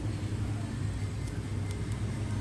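Steady low background hum, with a couple of faint light clicks near the end as scissors work at a speaker cable's plastic sheath.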